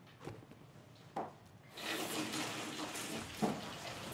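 A few light knocks, then a sliding glass office door rolling open along its track for about two seconds, with a thump near the end.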